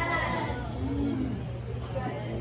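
A short, high, voice-like cry that rises and falls in pitch, followed about a second later by a shorter, lower one, over a steady low hum.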